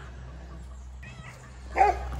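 A cat gives one short, faint meow about a second in.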